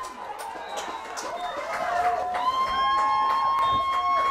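Spectators at an outdoor youth football game shouting and cheering after an interception. Several high voices overlap, and one long high-pitched yell is held through the last second and a half.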